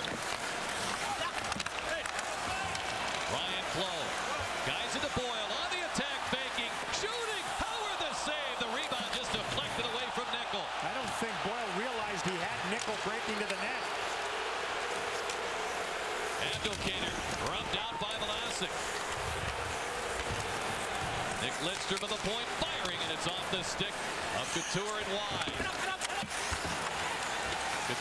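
Rink sound of an ice hockey game in play: steady arena crowd noise with repeated thuds of puck and sticks against the ice and boards.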